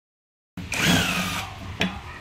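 A cordless power tool runs in one short burst of under a second, its motor whine falling in pitch as it slows, driving a bolt at the ball joint mounting of a Toyota Hiace upper suspension arm.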